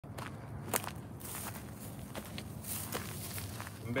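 Footsteps on dry, rough ground among dry grass and brush: irregular crunches with rustling of the dry vegetation.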